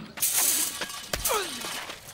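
A chain-link fence rattles and jangles as bodies are slammed against it in a fight, with a heavy knock a little past halfway and a short falling cry.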